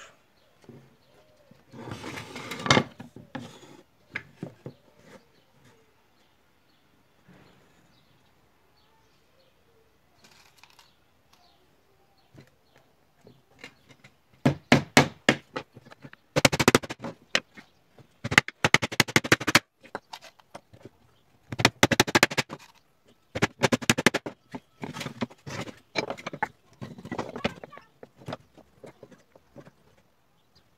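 Claw hammer driving nails into pallet-wood slats: quick runs of sharp blows, one nail after another, from about halfway through. About two seconds in, a brief clatter.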